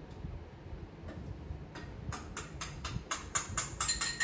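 Cleaning at a kitchen counter: a rapid run of short, sharp strokes, about four a second, starting about halfway in. Near the end comes a light ringing clink.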